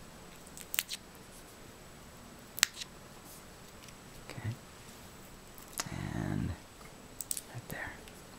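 Quiet handling of a dried rosebud: a few sharp clicks and snaps as its dry sepals are pulled off, the loudest a few seconds in. A short low hum of a voice comes about six seconds in.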